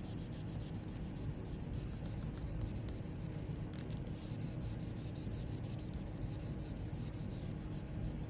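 A dry-erase eraser rubbing back and forth over a plastic-covered worksheet, wiping off marker writing: a steady scrubbing sound.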